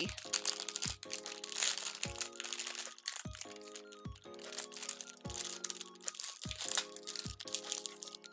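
Plastic blind-box bag crinkling as it is torn open and handled, over background music with sustained tones and a steady beat of about one knock a second.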